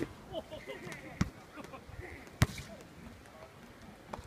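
Two sharp knocks a little over a second apart, the second louder, over faint distant voices.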